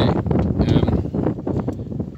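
Wind buffeting the microphone: a loud, uneven rushing noise, heaviest in the low end.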